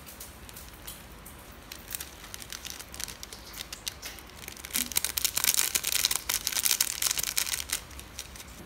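Plastic seasoning sachet crinkling as it is squeezed and shaken to sprinkle powder over noodles: scattered light crackles at first, then denser, louder crinkling for the last three seconds or so.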